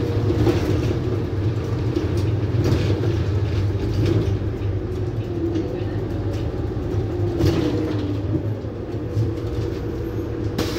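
Bus engine and drivetrain running steadily as the bus drives, heard from inside the saloon at the front, with a steady low rumble and occasional light rattles.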